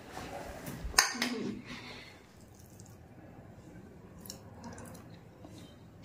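A single sharp knock about a second in, then faint, quiet small sounds of someone eating sewai from a bowl.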